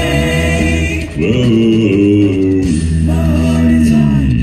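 Five-man a cappella group singing live in close harmony over a deep bass voice, holding long chords; a new chord slides in about a second in.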